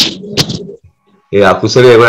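A few sharp clicks and a hiss, a short pause, then about a second and a half in a man's low voice starts a drawn-out, steady-pitched intonation like chanting.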